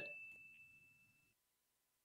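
Near silence, with the faint ringing of a wine glass, one steady high tone that fades out a little over a second in.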